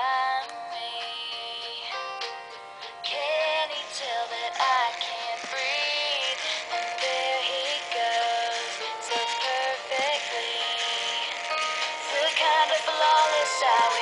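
A pop song with a singer playing through the small built-in speaker of an i-Dog Amp'd robot dog, with very little bass.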